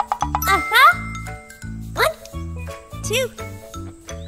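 Children's cartoon background music with a steady bass line and tinkling bell notes. Short wordless vocal sounds from a child character swoop up and down about three times over it.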